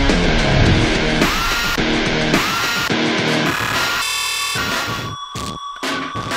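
Heavy, aggressive rock intro music with a driving rhythm. About four seconds in it breaks into a short stuttering glitch, then thins out to a steady high tone with separate pulsing hits.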